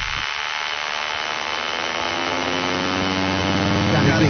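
Buzzing electronic synthesizer drone of a hip-hop backing track's intro, a thick steady stack of tones that grows slowly louder.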